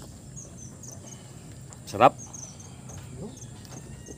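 An insect chirping faintly in quick runs of short, high chirps, under a steady low background hum.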